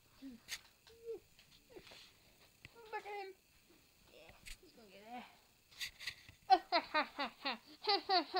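A person laughing: a few short, scattered giggles and wavering vocal sounds at first, then near the end a fast, loud run of 'ha-ha-ha' laughter.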